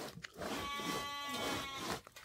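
A sheep bleats once: a single long, steady call of about a second and a half.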